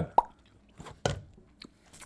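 A chewed candy being spat out: two short wet mouth sounds, the first just after the start and a weaker one about a second in.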